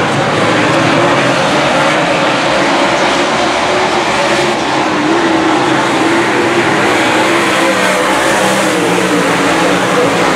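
A field of dirt Late Model race cars running at speed around a dirt oval, their V8 engines a loud, continuous din. The engine notes rise and fall as the cars work through the corners and straights.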